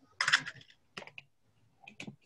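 A short burst of computer keyboard clatter just after the start, then a few single key clicks about a second in, heard over a video call.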